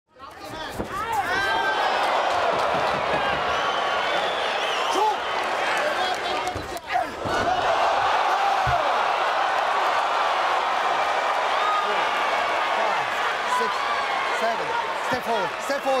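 Arena crowd yelling and cheering loudly at a knockout, many voices at once, with a short dip about seven seconds in.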